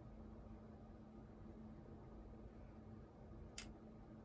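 Near silence: room tone with a faint steady hum, and one soft click about three and a half seconds in.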